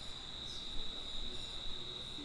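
A steady high-pitched tone, one unbroken pitch, over quiet room tone.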